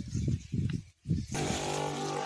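Irregular low buffeting on the microphone for about the first second, then after a brief drop-out a steady, even-pitched motor hum starts: the pump of a VRON knapsack sprayer running while spraying.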